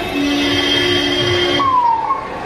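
A vehicle horn sounded in a long steady blast on two notes, cutting off about one and a half seconds in, followed by a short falling tone.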